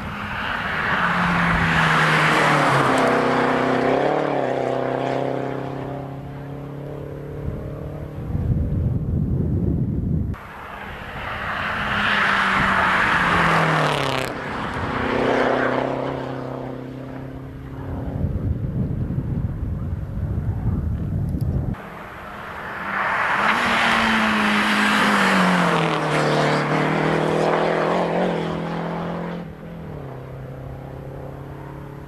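Three rally cars in turn, each racing past at full throttle. On each one the engine note swells as it nears, drops in pitch, then holds, and each pass is cut off abruptly by the next one.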